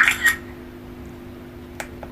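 Smartphone camera shutter sound, a short double click, as a photo is taken through the screen reader's take-picture button, then a single faint click near the end, over a steady low hum.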